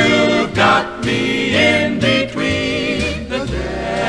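Mixed swing vocal choir singing in close harmony, from an old monaural recording.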